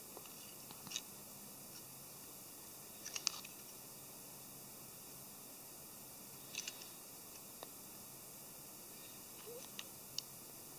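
Faint steady hiss with a handful of short, soft clicks and rustles from small plastic scale-model parts being handled and pressed together.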